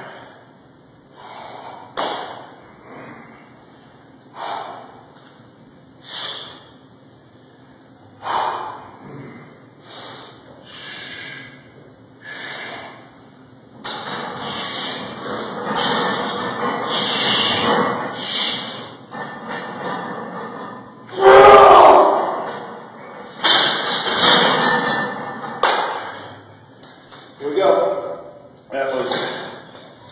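A powerlifter's sharp, forceful breaths, one every second or two, bracing for a heavy front squat, here a 500-pound single. Then come heavier, almost continuous straining breaths under the bar and one loud shout of effort about two-thirds of the way through, followed by more hard breaths.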